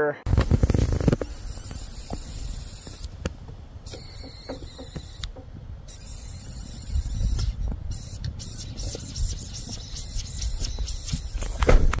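Air hissing out past a loose Allen bolt on a Lone Peak camper's side rail, which the owner thinks is air pushed out by water trapped in the rail. The hiss cuts out briefly twice, as when a finger covers the bolt, over a low rumble on the microphone.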